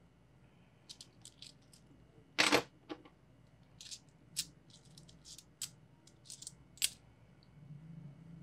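Metal peso coins clicking against one another as they are counted off a stack held in the hands, in irregular light clicks, with one louder clack about two and a half seconds in.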